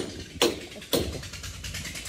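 Sharp, evenly spaced knocks, about two a second, the last clear one about a second in, followed by fainter rapid ticking.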